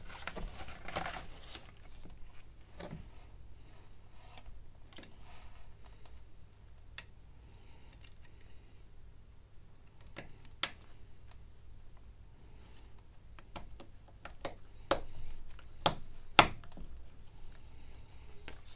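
Scattered small clicks and taps as a smartphone is taken apart by hand: plastic internal covers and connectors being pried and handled, with a soft rustle near the start and the sharpest click near the end.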